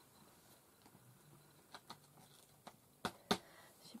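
Quiet room with a few light taps and clicks of craft supplies being handled on a tabletop, the two sharpest coming close together about three seconds in.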